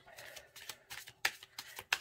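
Tarot cards being handled and shuffled by hand: a few separate soft flicks and slides of card stock.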